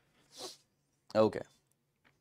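A man's short sniff close to the microphone about half a second in, then a single spoken "okay".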